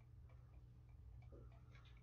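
Near silence: faint room tone with a steady low hum and a scatter of faint, unevenly spaced light ticks.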